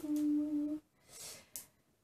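A woman humming one steady "mmm" note for just under a second, followed by a short, soft hiss.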